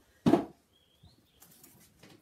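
A single short thump about a quarter of a second in, an object being set down on the floor. A faint, brief high chirp-like tone follows about a second in.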